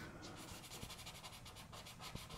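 Faint scratching of a pencil shading on paper in quick, even back-and-forth strokes.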